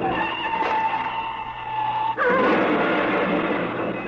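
Radio-drama sound effect of a car crash: a sustained tyre squeal for about two seconds, then a sudden loud crash as the coupe smashes through a guardrail, the noise dying away near the end.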